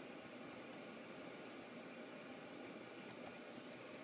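Faint steady hiss of room tone, with a few faint light ticks scattered through it.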